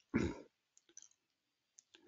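A short rush of noise, lasting about a third of a second, just after the start, then a few faint clicks on a video-call audio line.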